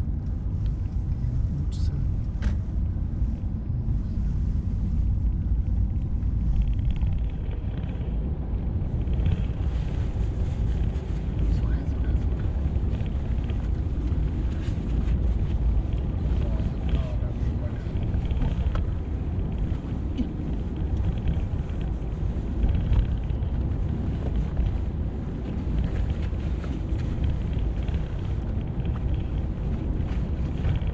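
Steady low road and engine rumble of a Mercedes-Benz car driving, heard from inside its cabin.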